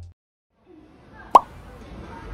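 A single short, sharp pop about a second and a half in, over faint indoor background noise that comes in after a moment of silence. A chiming music phrase fades out at the very start.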